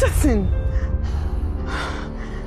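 A woman's short cry that falls in pitch, then a sharp breath near the end, over a low, steady film-score drone.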